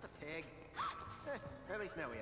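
Quiet dialogue from an animated show with a little background music, and a brief rustle at the start.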